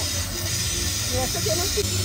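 Steady hiss of a lampworker's bench gas torch flame working small glass figures. Under it run background music with a low bass line and faint voices.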